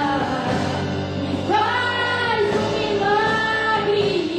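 Live worship music: a woman sings long held notes over the accompaniment.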